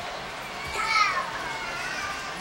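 Children's voices chattering, with one high child's voice calling out about a second in, its pitch falling.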